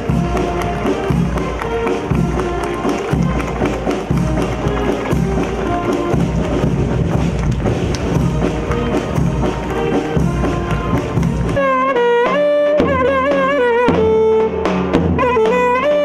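Brass band march music with a steady bass-drum beat. About twelve seconds in it gives way to a Turkish folk dance tune: a single melody line with wavering, ornamented pitch, for a zeybek dance.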